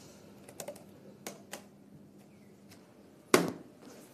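A few light clicks on a laptop, then a sharp clack as the laptop lid is shut, the loudest sound, a little over three seconds in.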